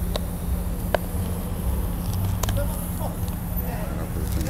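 The One Chip Challenge package being torn open and handled: three short, sharp crackles about a second apart over a steady low hum.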